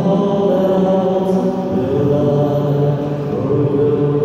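Mixed church choir singing long, held notes of a slow hymn, led by a male voice, with the chord shifting a few times.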